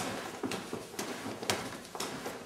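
Open-hand strikes and hooking parries landing on a free-standing punching bag and its padded striking arm: dull slaps about two a second.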